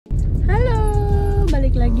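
A person's voice drawn out on one long high note, then dropping into speech, over the steady low rumble of a car cabin.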